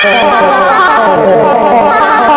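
Cartoon character voice clips, pitch-shifted and stacked in several layers, sequenced and looped into a dense, loud musical pattern.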